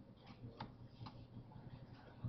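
Two faint computer mouse clicks, about half a second and a second in, over quiet room tone.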